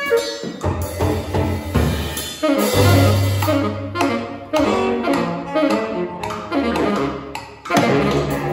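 Free-improvised jazz trio playing together: tenor saxophone, bowed cello and drum kit, with irregular drum strikes under the horn's notes. A brief dip in loudness comes just before the end.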